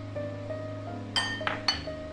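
Three quick ringing clinks of a ceramic bowl knocking against a stainless steel pot as minced garlic is tipped in, starting about a second in, over steady background music.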